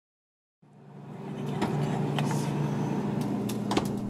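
A steady low mechanical hum fades in after about half a second, with a few light clicks and knocks through it.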